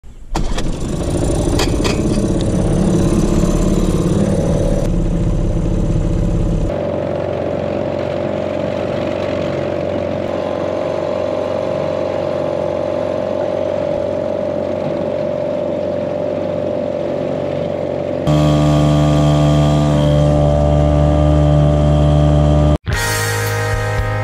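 Small outboard motor on a jon boat running, first rough and louder, then settling about seven seconds in to a steady run with an even hum. Near the end a louder steady sound takes over for a few seconds, then it cuts off sharply and guitar music begins.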